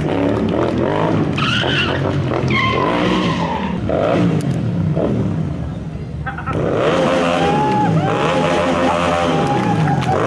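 A stunt motorcycle's engine revving up and down in repeated surges, with tyre squeal, as the bike is held on one wheel during stunts. The engine note drops briefly about six seconds in, then rises again.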